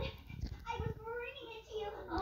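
Wordless, voice-like vocal sounds from a children's TV programme, heard through the television's speaker.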